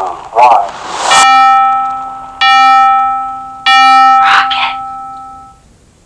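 Three struck notes of the same pitch from an electronic keyboard-like tone, each starting sharply and ringing for about a second, the last fading out about five and a half seconds in. A short vocal sound comes just before the first note, and a brief breathy sound comes during the last.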